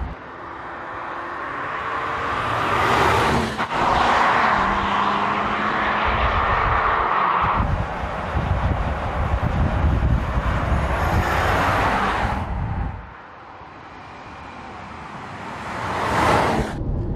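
Audi Q8 TFSI e plug-in hybrid SUV driving on asphalt: road and tyre noise swells as it approaches and passes about three seconds in, holds steady while it cruises, then drops away and builds again as it approaches near the end.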